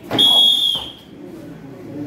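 A taekwondo kick slapping a hand-held kicking paddle, followed at once by a shrill, steady high tone lasting about half a second that fades near its end.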